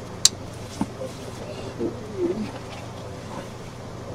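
Bubble wrap and box packaging being handled: one sharp snap about a quarter second in, a softer click just under a second in, then a faint hummed murmur near the middle, over a steady low electrical hum.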